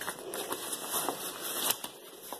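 Rustling and a few light clicks as the fabric and plastic parts of a play yard are handled during assembly, with a sharper click near the end.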